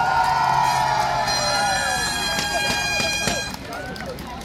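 A crowd cheering and shouting together, with some clapping, in answer to a call for a big round of applause. From about a second in, a steady high-pitched tone sounds over it, and both die down shortly before the end.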